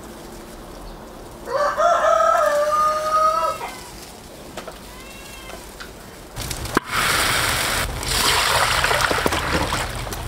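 A rooster crows once, a single call of about two seconds starting about a second and a half in. From about six and a half seconds a loud steady rushing noise starts as straw catches fire in the stove.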